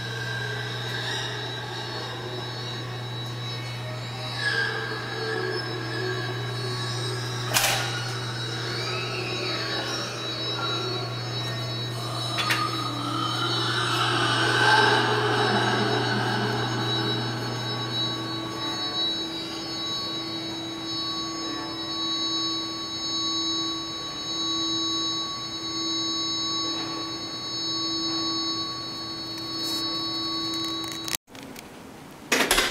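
Live experimental noise drone music: a sustained low drone that fades out about two-thirds of the way through, under steady high electronic tones, then a mid-pitched tone swelling and fading about every two seconds, with a few sharp clicks along the way.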